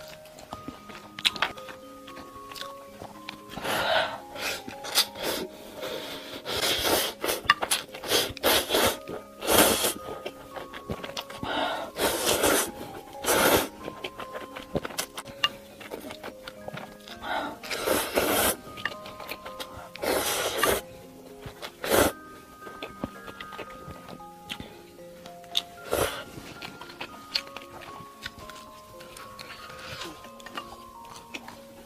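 Light background music with a simple stepping melody throughout. Over it, instant noodles are slurped loudly off chopsticks in a series of short bursts, most of them in the middle of the stretch, with quieter gaps between.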